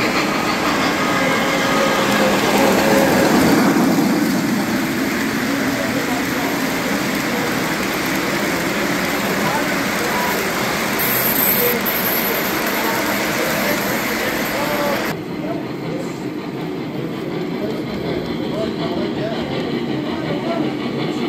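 O gauge three-rail model trains running on the layout, their wheels on the track making a steady noise, with people's chatter in the room behind. The sound changes abruptly about three-quarters of the way through.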